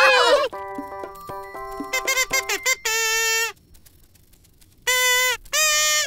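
Toy-band cartoon music: struck toy xylophone notes ringing together, then short reedy notes on a toy pipe, the last two coming after a brief pause near the end. A short laugh at the very start.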